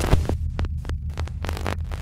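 Sound design of an animated logo sting: a deep, throbbing bass hum overlaid with short, glitchy electronic clicks.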